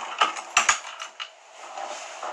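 A few sharp clicks and taps of a plastic permanent marker being picked up and handled, followed by a faint rustle near the end.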